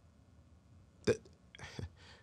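Quiet room tone, then about a second in a man's short clipped vocal sound as he starts a word ("the"), followed by a brief breathy sound.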